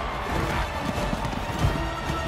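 Film soundtrack: orchestral-style score mixed with fight sound effects, irregular knocks and scuffles, with one sharper hit about one and a half seconds in.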